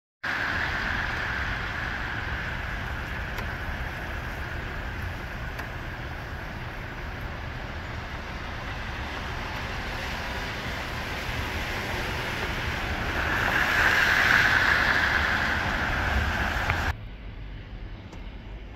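City traffic on a rain-wet street: a steady hiss of tyres on wet pavement over a low rumble of engines, swelling for a few seconds past the middle, then dropping off suddenly near the end.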